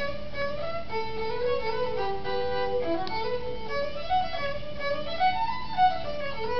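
Fiddle playing a melody, one bowed note after another without a break.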